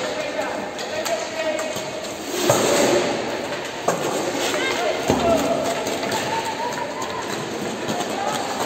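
Roller hockey game sounds: raised voices of players and coaches calling out continuously, with a few sharp knocks of stick on ball, the loudest about four seconds in.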